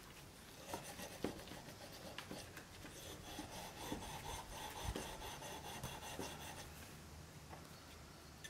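Faint rubbing and scraping of steel wool scrubbing a rusty metal lock part in a plastic tray, with small scattered clicks of metal and plastic.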